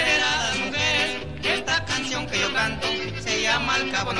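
Norteño band music: an accordion carries the melody over a bass playing a steady, bouncing pattern.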